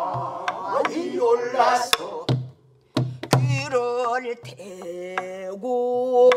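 Pansori singing with buk drum accompaniment: a bending, wavering vocal line punctuated by sharp stick strokes and low thumps on the barrel drum. After a brief pause about two and a half seconds in, the voice holds one long steady note.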